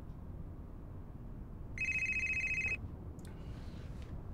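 Office desk telephone ringing: one steady, high-pitched ring about a second long, starting about two seconds in.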